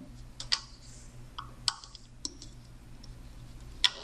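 Small sharp clicks, about six scattered unevenly, the loudest near the end, as a metal loom hook and rubber bands knock against the plastic pegs of a Rainbow Loom during looping.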